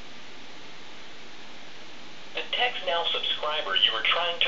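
An open telephone line hissing steadily, then about two and a half seconds in a voice comes over the phone line, thin and cut off in the highs.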